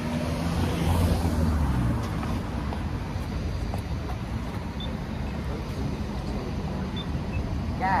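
Road traffic noise: a vehicle goes by in the first couple of seconds, then a steady traffic hum.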